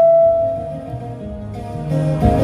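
Live folk music: an acoustic guitar accompanies a woman's long held sung note, which fades out less than a second in. The guitar plays softly for a moment, then strums louder again near the end.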